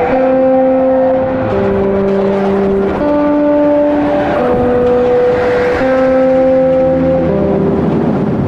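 Background music: slow, held chords that change about every second and a half.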